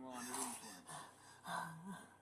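A woman's distressed, unintelligible voice broken by gasping breaths.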